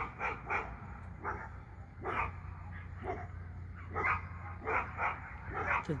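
A dog barking repeatedly in short, irregularly spaced barks.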